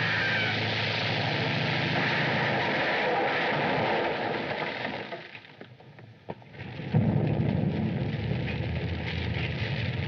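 Small propeller plane's engine running loudly as it takes off, a dense rumbling drone. The noise fades away about five seconds in and a loud engine rumble comes back suddenly at about seven seconds.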